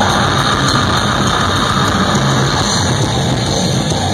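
Death metal band playing live through a stage PA, with distorted electric guitars and drums in a dense, loud, unbroken wall of sound.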